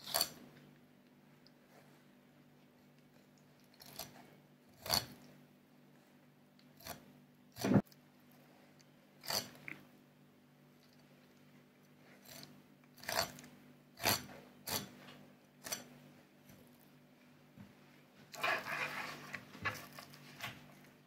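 A filleting knife cutting along the backbone of a sea bream: scattered quiet crunches and clicks, about a dozen, as the blade works over the bones, with a longer scraping stretch near the end.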